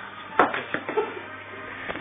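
A sharp knock about half a second in, a conker on a string striking another conker, followed by a few fainter knocks and faint voices.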